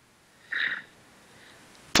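Quiet room tone with a short breath into the microphone about half a second in, and a small mouth click just before speech resumes.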